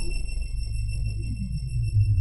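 Sampler-made electronic beat in a breakdown. The drums drop out, leaving a sustained deep bass under steady high-pitched tones, while synth tones glide down in pitch and then sweep back up, like sonar pings.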